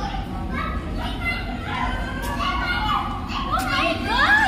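Children's voices and chatter, with high excited squeals that sweep up and down in pitch near the end.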